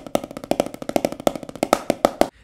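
Wooden drumsticks playing a fast stream of strokes on a Reflexx rubber practice pad, about ten strokes a second, some hit harder than others.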